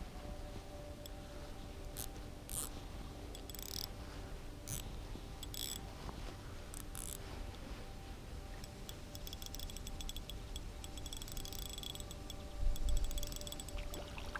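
Ultralight spinning reel being cranked on a retrieve: scattered short clicking bursts in the first half, then a dense run of fine clicks, with a low thump shortly before the end as the rod loads with a hooked fish.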